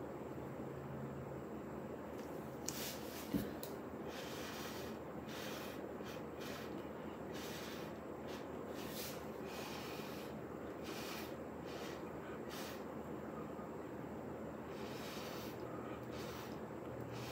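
Short puffs of breath blown through a stainless steel straw with a silicone tip onto wet paint, starting about three seconds in and repeating roughly once a second, with a soft knock just after the first puffs.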